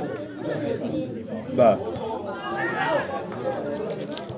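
Spectators' chatter: several men talking over one another, with one voice rising louder about one and a half seconds in.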